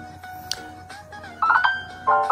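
Smartphone accessibility tones from the phone's speaker: a steady held tone, then a short bright chime about one and a half seconds in, the signal that the two-finger hold has switched TalkBack on.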